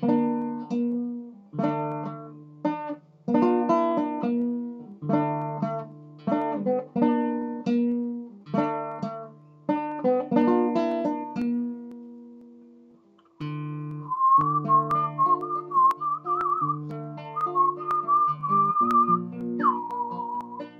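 Acoustic guitar playing a slow sequence of plucked chords, each left to ring, fading away about twelve seconds in. After a short gap the guitar comes back in and a man whistles the melody over it, with a light vibrato.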